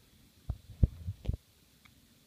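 A quick run of four or five dull, low thumps starting about half a second in and over in under a second, the middle one the loudest.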